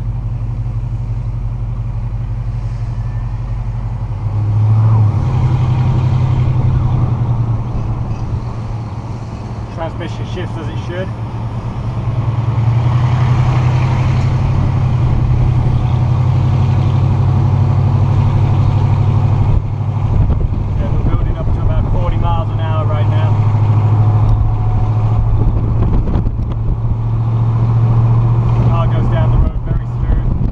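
V8 engine of a 1964 Pontiac GTO convertible running under way, heard from the open cabin. It gets louder about four seconds in, eases off around eight seconds, then pulls louder again from about twelve seconds and holds there.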